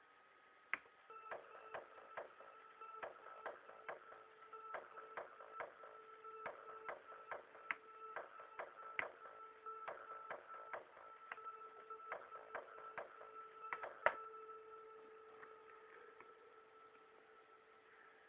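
Faint electronic music playing from a laptop music program: a held synth note with sharp, clicky percussion hits over it, starting about a second in. A louder hit comes near the end, and the note fades out after it.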